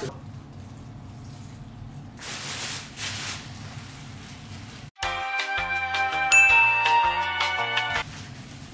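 Quiet handling of a plastic bag as water is added to crushed chips, with a short hiss about two seconds in. About five seconds in, a music cue of bright, bell-like chiming notes cuts in and is the loudest sound.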